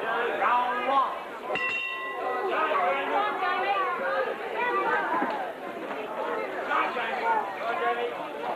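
Crowd chatter in a hall, with the ring bell struck once about a second and a half in to start the round, ringing briefly before fading under the voices.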